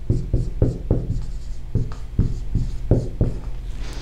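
Dry-erase marker writing on a whiteboard: a quick run of short, separate strokes.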